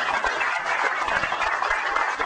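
Audience applauding: a dense, steady clatter of many hands clapping.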